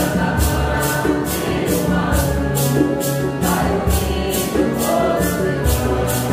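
A Santo Daime congregation of men and women singing a hymn in unison, with maracas shaken on a steady beat of about two to three shakes a second.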